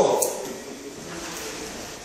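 A man's spoken phrase trailing off, then a brief click a quarter-second in, followed by low, steady room noise.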